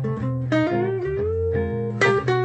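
Archtop guitar playing a jazz solo line: a few quick notes, then a held note that bends slowly up in pitch through the second half.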